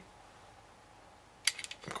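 Near silence, then about one and a half seconds in a sharp click followed by a few smaller clicks: the plastic LEGO pieces of the truck's stiff hinged tailgate being worked between the fingers.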